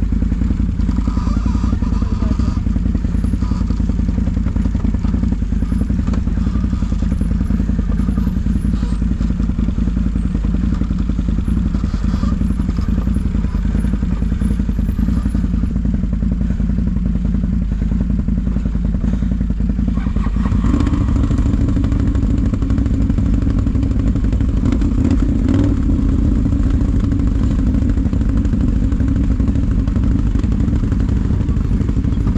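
ATV engine running at low revs with a steady drone. About two-thirds of the way in, its note rises and grows louder as it takes on more throttle.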